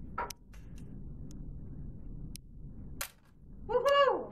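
A small model lander dropped onto a hard floor, landing with a single sharp tap about three seconds in and giving a little bounce. A few faint clicks come before it.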